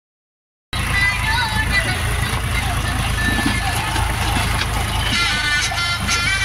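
Tractor diesel engine running steadily while it powers a hydraulic tipper trolley dumping soil, with a song, voice and instruments, playing loudly over it. The sound starts abruptly just under a second in.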